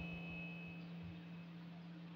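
Quiet pause with faint room noise and a steady low hum, plus a faint high whine that fades out about halfway through.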